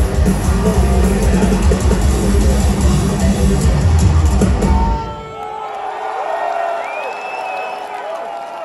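Heavy metal band playing live, electric guitars and drum kit, breaking off about five seconds in at the end of the song. A quieter crowd cheers after it, with a few long tones gliding up and down over the noise.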